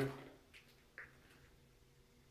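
Quiet indoor room tone with a faint steady hum and a soft click about a second in.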